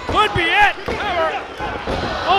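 A referee's hand slapping the wrestling ring canvas in a pin count, a few thuds that break off at a near-fall, under loud shouting voices.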